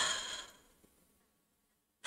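A woman's short, breathy sigh into a close microphone, fading out within about half a second.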